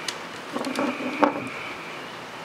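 Multimeter test probes being handled and set on the metal terminals of a motor run capacitor: a light click just after the start, then a few small taps and scrapes, the loudest a little past the middle, over a steady low hiss.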